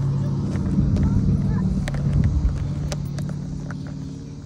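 A steady low hum, like a motor running, fading over the last second, with faint voices behind it.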